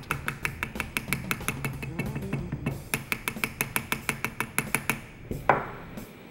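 A rubber mallet taps rapidly and evenly along the top rib of a Remington Model 1900 side-by-side shotgun's barrels, about five taps a second, with a brief pause midway and one harder tap near the end. The taps show that the rib is loose at the breech end.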